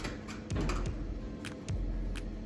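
A few light, irregular clicks and taps from items being handled at a service counter, over a low steady hum.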